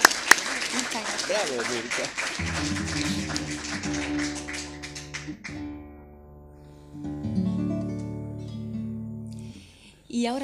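Applause dies away over the first couple of seconds, then a nylon-string classical guitar plays a few sustained chords, each left to ring, changing twice before fading out near the end.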